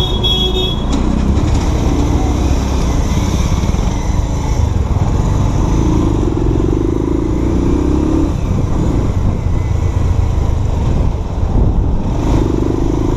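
Motorcycle engine running under way with wind noise on the handlebar microphone, steady throughout, with the engine note rising for a couple of seconds past the middle. A brief high-pitched tone sounds near the start.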